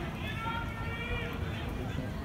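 A person's raised voice calling out once, drawn out for about a second and dropping at the end, over a steady low background rumble of the ballpark.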